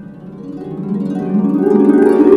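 Concert harp played solo: a run of plucked notes climbing in pitch and growing steadily louder.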